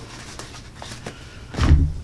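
Stacks of notepad paper handled and set down on the bed of a heavy-duty guillotine paper cutter: light clicks and paper rustle, then a heavier thump near the end.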